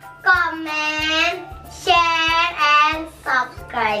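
A girl singing a short drawn-out phrase in three long held notes.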